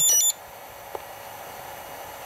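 HTRC C240 Duo battery charger giving a quick run of high electronic beeps that step up and down in pitch for about a third of a second, as its LiPo storage program is started. A faint click follows just under a second in.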